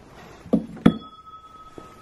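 A wooden cabinet door knocks, then a small metal object inside the cabinet is struck once and rings with a clear tone that fades over about a second.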